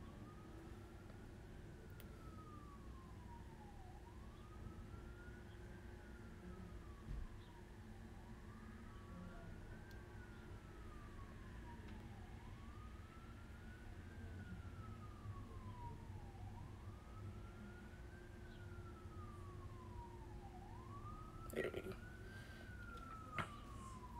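Faint emergency-vehicle siren in a slow wail, its pitch rising and falling about once every four seconds, over a low steady hum. A few small knocks near the end.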